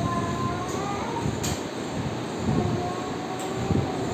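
Steady rumbling background noise with faint held tones, and a short click about one and a half seconds in.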